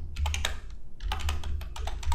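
Typing on a computer keyboard: an irregular run of quick key clicks, over a low steady hum.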